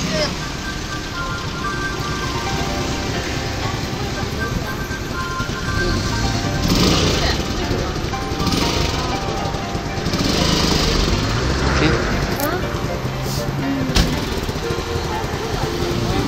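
Street ambience: car engines running steadily, with music playing and voices in the background.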